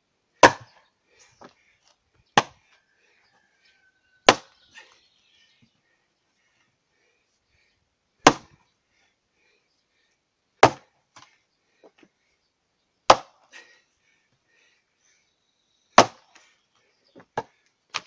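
Lighter splitting axe chopping the edges off a log of year-old firewood: seven sharp strikes, two to four seconds apart, with a few small knocks between them.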